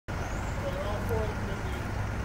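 A steady low hum with people talking faintly over it.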